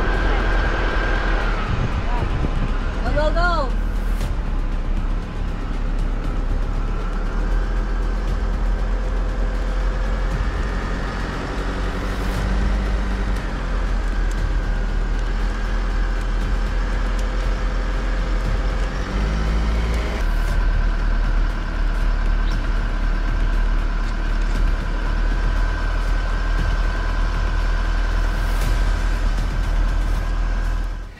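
Steady engine and road noise of a slow-moving motor vehicle pacing the cyclists, with the engine note shifting a couple of times.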